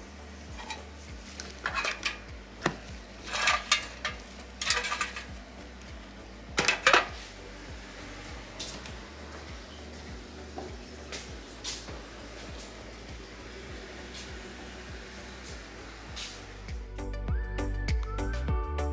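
Dishes and hard decor pieces clinking and clattering as they are handled and gathered up, in a burst of sharp knocks over the first several seconds, then only a few faint ticks. Background music comes in near the end.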